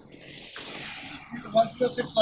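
Steady high-pitched hiss of a live outdoor field audio feed, with a man's voice starting near the end.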